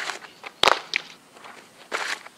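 A fastball softball pitch smacking into the catcher's leather mitt once, sharply, about two-thirds of a second in, with softer scuffs of the pitcher's cleats on the dirt around it.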